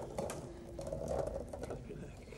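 Faint, rapid irregular rattling and clicking from a wire-mesh ball maze being handled, its ball rolling and knocking against the metal grid.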